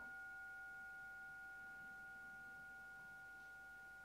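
Faint, steady ringing tone made of a few pitches, slowly fading away.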